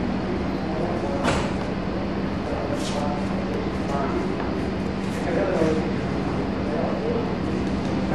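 Steady room noise of a dance hall with a constant low hum and faint voices in the background. Two brief soft swishes come at about one and three seconds in.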